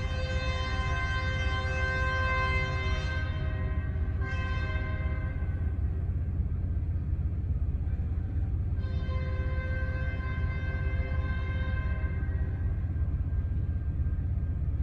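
Diesel locomotive air horn sounding a multi-note chord as the train moves off: a long blast, a short one about four seconds in, then another long blast about nine seconds in. A steady low rumble runs underneath.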